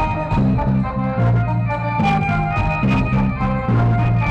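Live rock-fusion band playing an instrumental: bowed violin carrying sustained melody notes over a drum kit keeping a steady beat and a low bass line.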